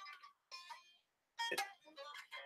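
Faint notes plucked on an unamplified electric guitar, a couple of short soft sounds about half a second and a second and a half in.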